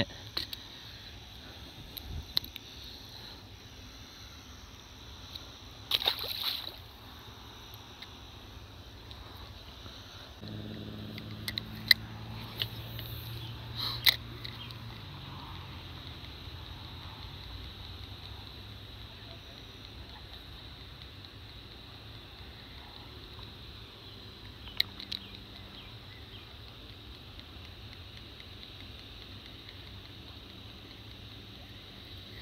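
Quiet lakeside with a steady, faint, high insect drone, like crickets. A short splash about six seconds in, a few sharp clicks around twelve to fourteen seconds and again near twenty-five, and a low hum that comes in about ten seconds in.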